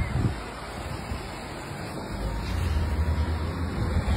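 Overheated electric-bike battery pack venting smoke with a steady hiss, the sign of the cells melting down. A low rumble of wind on the microphone builds in the second half.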